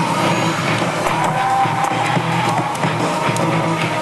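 Loud, steady music with guitar.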